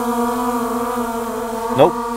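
Skydio 2 quadcopter hovering low over the ground, its propellers giving a steady, even-pitched buzzing hum that stays level throughout. It holds its height instead of descending on the pulled-down stick, because its obstacle avoidance keeps it off the ground.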